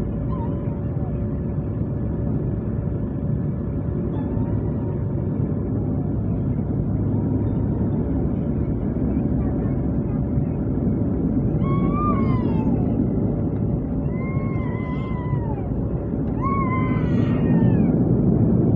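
Steady engine and propeller noise of a turboprop airliner heard inside the cabin as it rolls along the runway, with a steady hum tone throughout, swelling slightly near the end. From about twelve seconds in, several short wavering high-pitched cries rise and fall over the engine noise.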